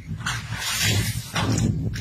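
Pond water splashing and sloshing in several uneven bursts as a swimmer churns through it.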